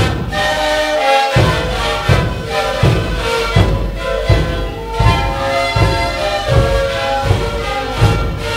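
A sikuris ensemble playing: siku panpipes sounding held notes over large bass drums struck in a steady beat, a little more than one stroke a second. The drums come in about a second and a half in.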